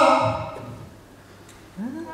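A man's drawn-out exclamation fading out, a short lull with only faint room sound, then a voice starting up again near the end.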